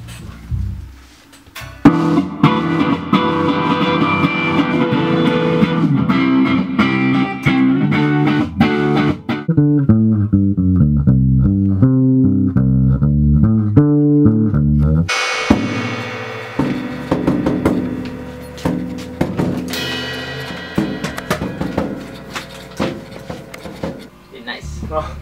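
Indie rock band music with drum kit, electric guitar and bass guitar, cutting in sharply about two seconds in. Midway the sound drops to a muffled, low bass-and-drum passage for about five seconds before the full band comes back, then gradually dies down near the end.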